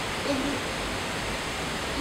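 Steady background hiss, with a child saying one short word just after the start.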